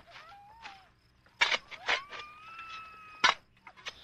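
A faint, muffled high-pitched cry: a short wavering call early on, a few sharp knocks, then one long held cry that ends with a sharp click near the end.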